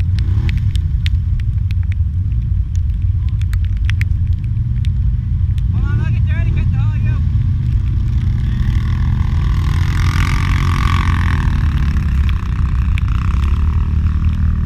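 Several ATV engines running at idle with a steady low rumble, one revving harder for a few seconds past the middle while quads work in deep mud; brief voices call out about six seconds in.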